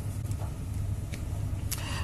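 A low, steady rumble on the broadcast audio with a few faint clicks, in a pause between speakers.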